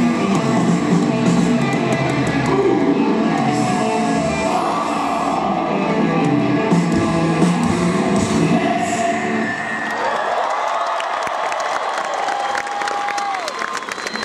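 Live rock band playing loud through a concert PA, recorded from the audience. About ten seconds in the band stops and the crowd goes on cheering and whooping.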